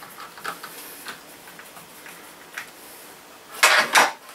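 Small screwdriver working a screw in the plastic base of a laptop, giving faint scattered ticks. Just before the end comes a louder, brief scraping clatter as the laptop is handled.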